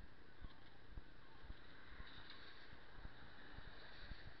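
Low rumble with irregular thumps and a steady hiss, typical of wind and movement on a small moving camera's microphone.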